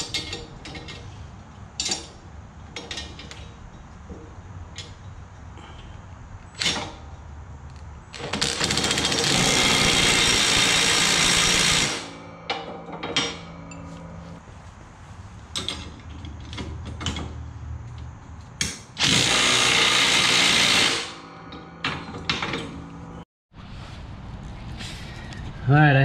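Milwaukee cordless impact driver running on the plow-mount bolts in two bursts of about four seconds each, the loudest sounds, amid scattered clicks and knocks of a ratchet wrench and steel parts being handled.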